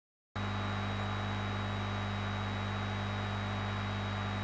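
Steady electrical mains hum on the sound feed, with a thin high steady whine above it. It cuts in abruptly a moment after a brief silence and then holds level.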